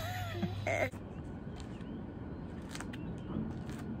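A voice is heard briefly during the first second, then a faint outdoor background with scattered light clicks and a few short chirps.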